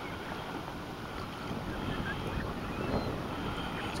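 Wind buffeting the microphone in a steady, gusty rumble, with small waves splashing on choppy water.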